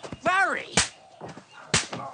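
A short, high cry with a rise and fall in pitch, then two sharp slap-like cracks about a second apart.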